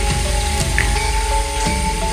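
Background music: held steady notes over a low, steady bass pulse.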